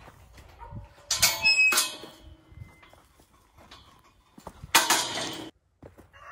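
Steel livestock pen gate or panels being handled, rattling and squeaking in two bouts: one about a second in with a brief squeak, and another near the end.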